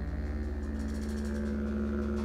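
Live band music held on a steady low drone with a sustained note above it and no clear beat.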